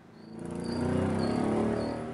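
Street sound of a traffic jam fading in: engines of cars and motorcycles running in slow, packed traffic, with three short high-pitched chirps about half a second apart.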